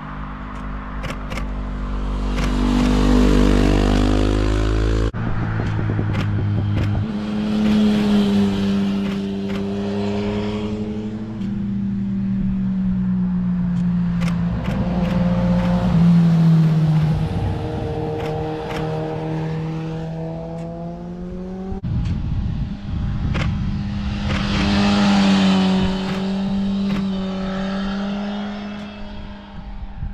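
Motorcycles passing one after another along a road bend, their engines rising and falling in pitch as each rides by and shifts gears. The sound cuts off abruptly twice, at about five seconds and again past twenty seconds, as one pass-by gives way to the next.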